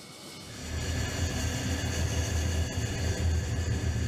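Jet engine of a Lockheed U-2 running steadily: a low rumble with a thin high whine on top, building over the first second.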